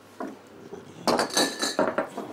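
Drinking glasses clinking and being set down on a bar counter: one short knock, then about a second in a longer clinking clatter with a high ring.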